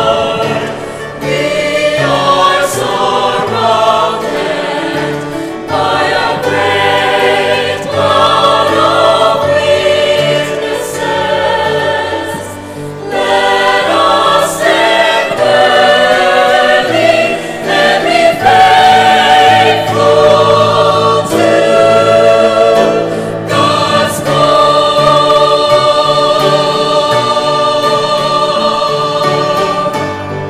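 Mixed choir of men and women singing a sacred piece in parts, phrase by phrase, closing on a long held chord near the end.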